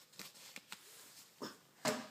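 Cut-out cardboard pieces of oatmeal-canister label being handled, giving faint scattered rustles and ticks, with a sharper click near the end.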